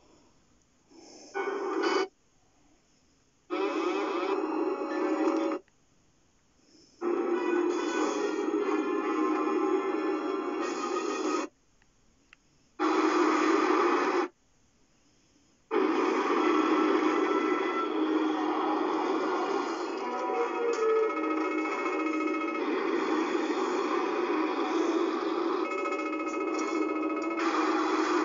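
A mono film soundtrack, mostly music, playing loudly over home-theatre loudspeakers in a small room. In the first half it cuts out abruptly to near silence about five times, then runs on without a break.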